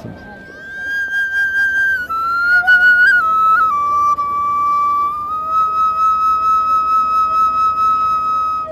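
Bamboo transverse flute playing a slow, pure-toned melody: a held high note, a few steps down, then a long sustained note that swells and pulses.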